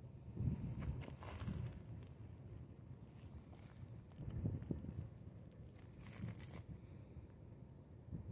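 Faint wind buffeting the microphone in gusts, a low rumble that swells about half a second in and again past the middle. Two short rustles, about one second in and about six seconds in, like dry brush crunching underfoot or against the camera.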